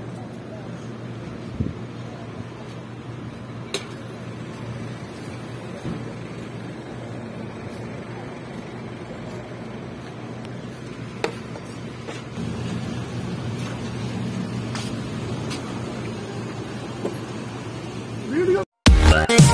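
Busy street ambience: a steady hum of car engines and passing traffic, a little louder about two-thirds of the way through, with a few sharp clicks.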